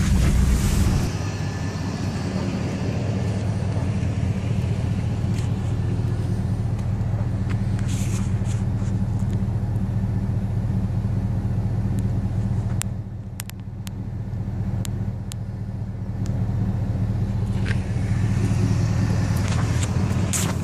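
Car engine running, heard from inside the cabin as a steady low rumble, dipping in level for a second or two a little past the middle, with a few faint clicks.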